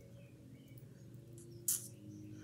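A metal link bracelet being handled, with one short sharp clink of its links or clasp near the end, over a low steady hum.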